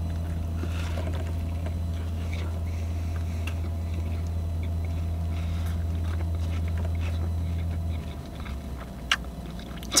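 Steady low hum of a car idling, heard inside the cabin, which drops to a lower, quieter hum about eight seconds in. Faint chewing sounds and a sharp click come near the end.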